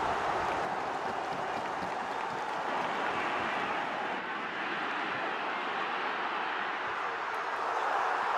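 Football stadium crowd noise: a steady din of many voices from the stands, with no single event standing out.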